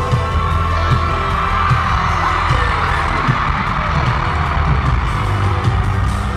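Loud live concert sound system playing a deep, throbbing bass beat, about one thump a second, under a swelling wash of sound, heard through a phone recording in the arena.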